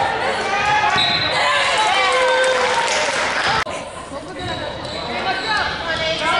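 Several voices shouting and calling out across an echoing gymnasium during a wrestling bout. A little past halfway the sound cuts off abruptly and comes back quieter, with voices still calling.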